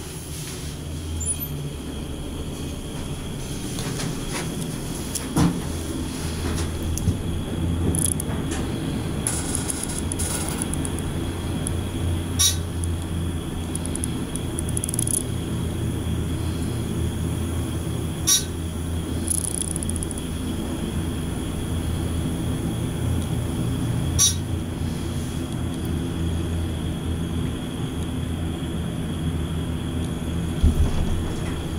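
Dover hydraulic elevator car travelling up, a steady low hum throughout, with a few sharp clicks about six seconds apart.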